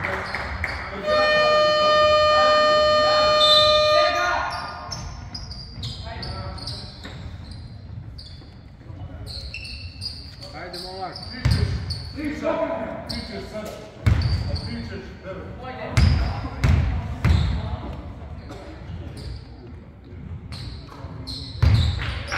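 Scoreboard horn sounding one steady tone for about three seconds in an echoing gym. Later a basketball bounces a few times on the hardwood floor, in scattered thumps.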